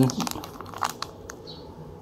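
Clear plastic bags holding coin capsules crinkling as they are handled, with a few light ticks in the first second or so before the rustling dies down.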